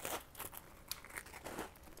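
A quiet crunching bite into a graham-cracker s'more, then a few crisp crunches of chewing at irregular intervals.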